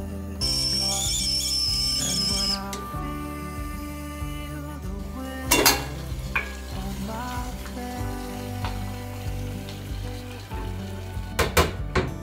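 Stainless steel kettle on a gas stove being handled: a high hiss for about two seconds near the start, a loud metallic clank of the lid about halfway, and a few light clicks and knocks near the end, over soft background music.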